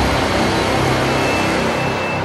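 Trailer-style cinematic sound effect over dramatic music: a loud deep rumble with a noisy wash, left from a hit just before, slowly dying away.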